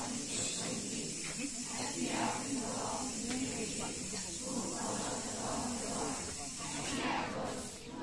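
A large group of children and young people reciting scripture aloud together in unison: a continuous blended murmur of many voices without pauses.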